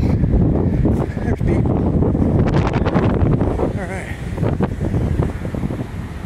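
Wind buffeting the phone's microphone, a steady low rumble, with a voice heard faintly in it a couple of times.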